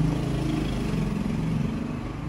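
Car engine idling steadily, heard from inside the cabin.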